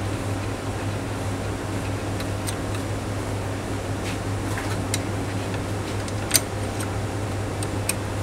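Steady low machine hum with a few faint, light clicks of small screws being handled and fitted to fix the magnet to the magnet gripper inside the instrument; the sharpest click comes a little past six seconds in.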